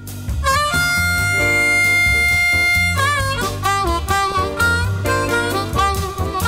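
Harmonica played into a cupped handheld microphone: a bent note sliding up into a long held tone, then quick phrases of short bending notes, over a steady low accompaniment.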